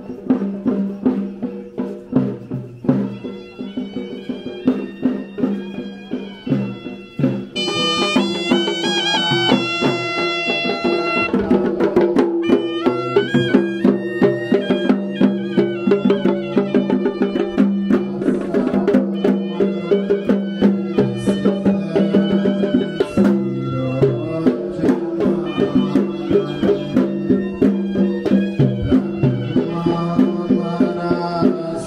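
Traditional Sri Lankan temple procession music: a shrill reed pipe playing a stepped melody over a steady drone, with regular drum beats. It gets louder and fuller about a quarter of the way in.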